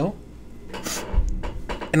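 Handling noise in a pause between spoken phrases: a short hiss about three-quarters of a second in, then a soft low thump and a few light clicks.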